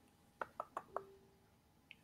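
Four faint, quick clicks in about half a second, the last followed by a brief low tone.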